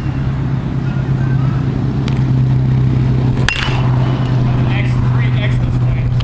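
A steady low hum throughout, with one sharp crack about three and a half seconds in.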